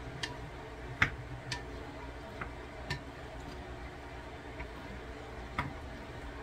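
Wooden spoon clicking against a glass bowl as a salad is stirred and tossed: about half a dozen sharp, irregularly spaced clicks over a low steady background.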